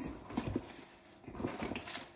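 Faint rustling and light clicks of crumpled tissues and small items being handled in a handbag.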